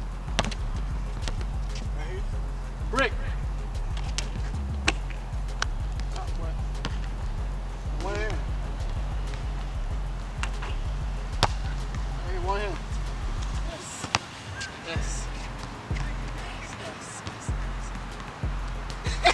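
A basketball bouncing on an asphalt court, a scattered series of sharp bounces, over background music with a steady bass line that drops out twice near the end.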